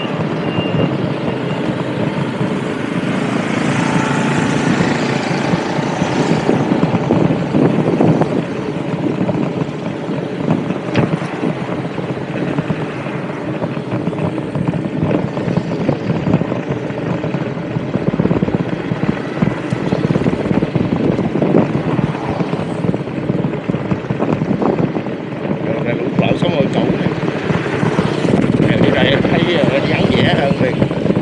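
Wind buffeting the microphone over the running of a small motorbike engine, heard while riding along a road.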